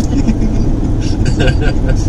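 Steady low road and engine rumble of a car driving at highway speed, heard from inside the cabin, with faint voices in the second half.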